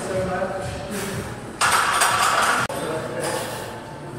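Voices in a large, echoing room, cut about a second and a half in by a loud hissing noise that lasts about a second and stops abruptly.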